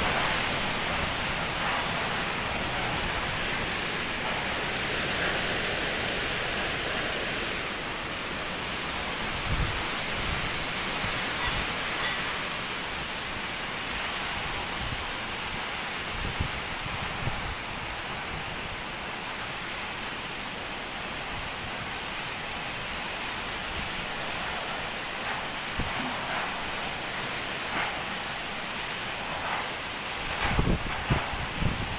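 Heavy rain pouring steadily in a strong windstorm, with wind thrashing the trees. Occasional short low thumps of wind buffeting the microphone.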